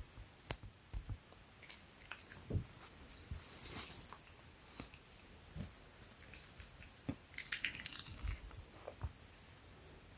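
Faint handling sounds: scattered light clicks and taps from a small retractable tape measure, and a soft rustle of the cotton T-shirt being smoothed flat, with a cluster of quick ticks about three-quarters of the way through.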